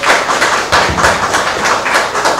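Audience applauding: many hands clapping at once, a dense, irregular clatter.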